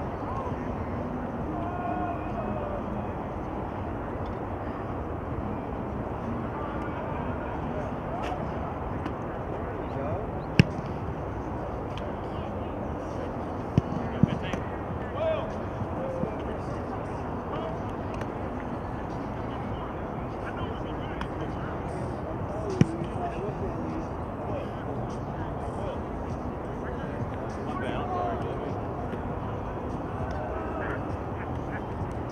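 Outdoor sports-field background: a steady wash of noise with faint, indistinct distant voices, broken by a few short sharp slaps, once at about ten seconds in, a quick pair near fourteen seconds, and once more a little past twenty-two seconds.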